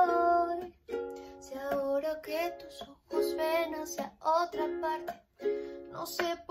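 Ukulele strummed in chords, with a woman singing over it, in phrases broken by brief pauses.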